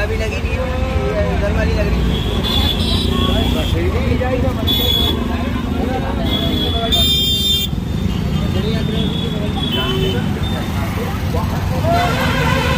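Busy street traffic: motorcycle and auto-rickshaw engines running under a steady rumble, with several short vehicle horn toots and people's voices talking in the background.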